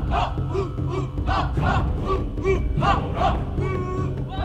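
A group of voices shouting short, repeated calls in a rhythmic chant, about three calls a second.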